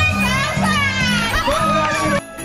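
Music playing with loud, excited, high-pitched voices calling out over it.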